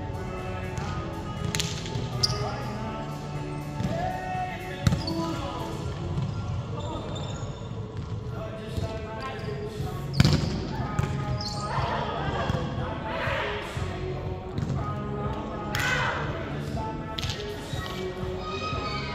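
Background music and voices fill a gym, broken by a few sharp smacks of a volleyball being hit, the loudest about ten seconds in.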